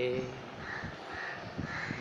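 A crow cawing three times in quick succession, harsh calls about half a second long each.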